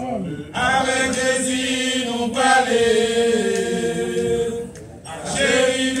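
A men's vocal group singing a hymn in harmony, a cappella, in sustained held notes, with short breaks between phrases just after the start and near the end.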